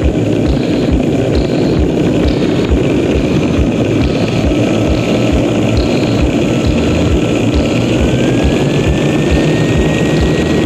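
Gas turbine (jet) engine running on a test bed: a loud, steady roar with a low thumping about three times a second. A thin whine climbs in pitch near the end and then holds, as the engine speeds up.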